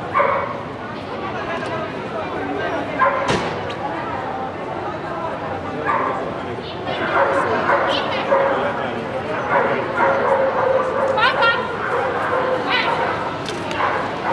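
Dogs barking and yipping repeatedly, in short sharp calls that come more often in the second half, with people talking in the background.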